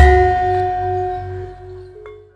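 A Javanese gamelan ensemble ends a gending on one final stroke, with a deep gong hum under it. Its bronze tones ring on together and fade away over about two seconds.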